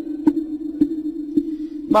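A wooden fish (mõ) is struck in an even beat, about two knocks a second, keeping time for Buddhist sutra chanting over a steady held drone tone.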